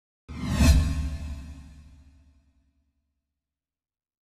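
An intro sound effect: a single whoosh over a deep low boom, starting suddenly about a third of a second in and fading away over the next two seconds.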